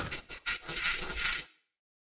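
Logo sound effect: the tail of a crash dies away, then a few clicks and about a second of metallic clinking and jingling, like springs and small metal parts scattering, cutting off suddenly.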